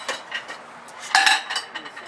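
Metal pot being handled: a few light clinks, then a louder ringing clatter of metal on metal a little over a second in.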